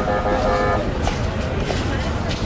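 A steady, pitched horn-like toot for most of the first second, over continuous background noise with a low rumble.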